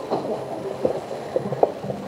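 Background room noise of a crowded hall, with a few scattered soft knocks.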